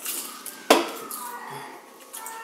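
Tableware clatter at a meal table: one sharp clink about two-thirds of a second in that rings briefly, with smaller utensil sounds around it.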